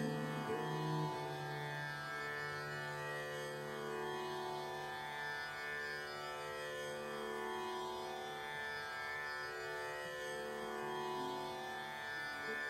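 Turkish electric saz playing slow, sustained melodic notes in an Indian raga style, ringing over a steady low drone.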